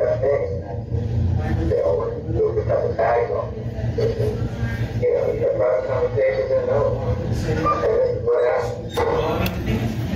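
A man's voice talking continuously but muffled and unintelligible, heard through an elevator intercom, over a steady low hum.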